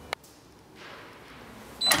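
Galaxy swing-away heat press being released and opened once its timer has finished: a loud sudden clunk near the end, with a brief high tone and some ringing after it. A single sharp click comes just after the start.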